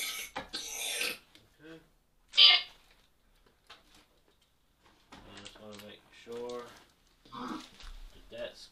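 A burst of hissing static in the first second, a short loud sound about two and a half seconds in, then indistinct voice-like sounds without clear words from about five seconds on.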